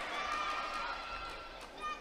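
Faint sports-hall ambience: distant voices on and around the court, growing quieter, with a short sharper sound just before the end.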